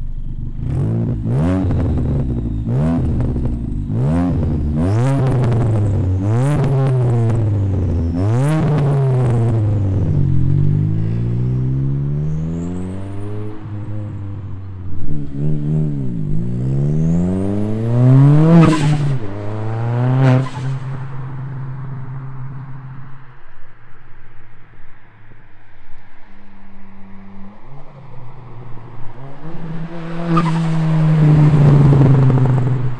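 Ford Fiesta ST Mk7's turbocharged 1.6 EcoBoost four-cylinder revved again and again through its side-exit exhaust, with sharp pops and crackles on each lift-off. Later the engine note sweeps up and down as the car drives past, then settles to a quieter, steady run near the end.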